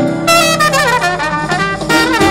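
A horn played live into a microphone and out through a small loudspeaker: a melodic line with bends and slides in pitch, over a steady backing track.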